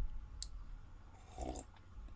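A faint single click at the computer about half a second in, then a brief soft sound about a second later.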